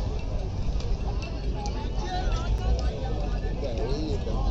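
Indistinct background chatter of several voices over a steady low rumble.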